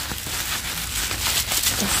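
Bubble wrap rustling and crinkling as it is handled and turned over, a steady crackly plastic noise.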